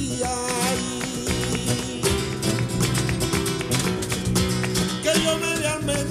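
Flamenco bulerías: a Spanish guitar playing throughout, with a male flamenco voice singing about the first second and again near the end.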